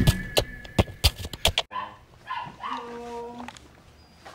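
A rock music track ends with a few sharp hits. After a cut, a little dog whines and yips in short calls, one held steady for nearly a second.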